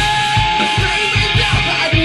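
A live rock band playing loud: electric guitar and full drum kit, with kick drum hits about four times a second and a long held note over the top for most of the first second and a half.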